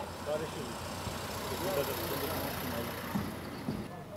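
A car driving slowly out past the microphone, its engine running at low speed, with a hiss of tyres that swells through the middle and eases off near the end.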